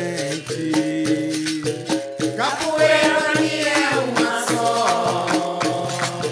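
Capoeira music: a berimbau-led ensemble with a shaken caxixi rattle and hand percussion keeping a steady beat. A sung line rises in the middle.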